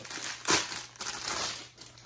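Clear plastic packaging crinkling as it is handled and pulled off a black fabric item, with one sharp, loud crinkle about half a second in and more rustling after it.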